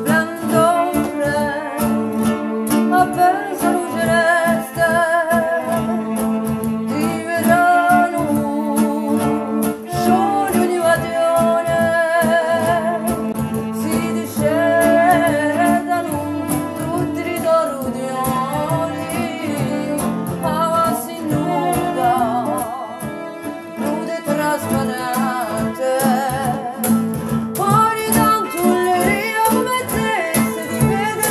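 A woman singing a Corsican song with a wide vibrato, accompanied by acoustic guitar, a bowed cello holding long low notes, and light cajón percussion played with rod sticks.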